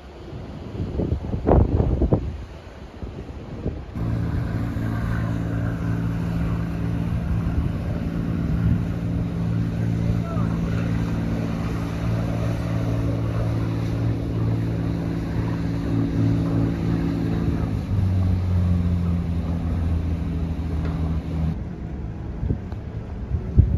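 Wind buffeting the microphone for a few seconds, then a steady engine drone from a motorized rescue boat running at speed. About four seconds before the end it settles to a lower pitch, then cuts off suddenly.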